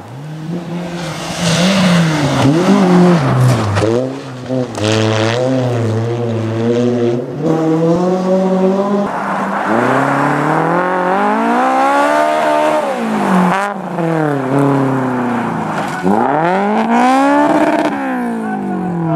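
Rally car engines revving hard on snow stages, the note climbing and dropping over and over with throttle and gear changes.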